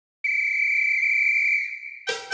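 One long, high, steady whistle blast, starting a moment in and held for over a second before fading away.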